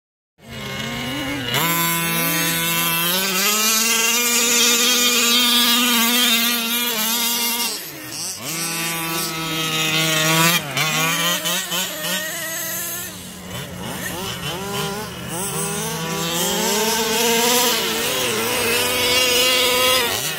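Radio-controlled off-road truck's small engine buzzing, its pitch rising and falling over and over as the throttle is worked, with a steadier engine note running underneath.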